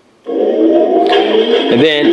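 Electronic sound effects from the Imaginext Battle Rover toy's speaker, triggered by its red button. After a brief gap, a synthesized tone slowly rises in pitch, a hiss joins in about a second in, and warbling, voice-like sweeps start near the end.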